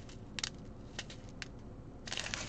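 Small plastic bags of diamond-painting rhinestones being handled, giving a few brief, faint crinkles and clicks.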